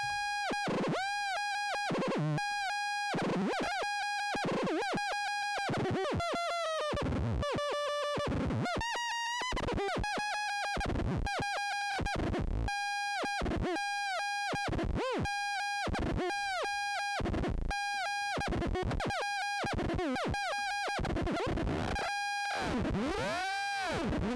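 Eurorack modular synth patch, a Make Noise Maths cycling as a pseudo-oscillator through a wave folder, playing a string of "piou-piou" laser zaps about one a second. Each is a bright, buzzy, steady tone with quick pitch bends at its start and end. The brightness of the tone shifts as the wave folder is modulated, with wider pitch swoops near the end.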